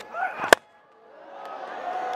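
A cricket bat strikes the ball with one sharp crack about half a second in. After a brief near-silent gap, the stadium crowd noise swells toward the end.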